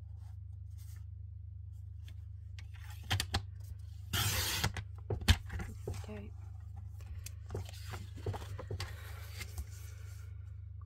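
Paper trimmer's blade drawn along its rail, slicing through a sheet of card stock in one short rasping stroke about four seconds in. Clicks and knocks of the trimmer and the card being handled come before and after it, over a steady low hum.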